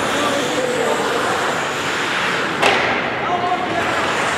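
Ice hockey play echoing in a near-empty rink: a steady hiss of skates on ice with players' scattered calls, and one sharp impact about two and a half seconds in.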